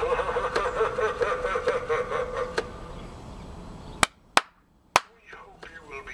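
Animated skeleton butler prop playing a laugh through its small speaker, a wavering cackle lasting about two and a half seconds that fades out. Three sharp clicks follow about four seconds in.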